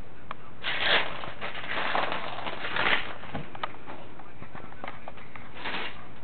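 Close rustling and crackling noise in irregular bursts, the loudest in the first half, with a few sharp clicks in between.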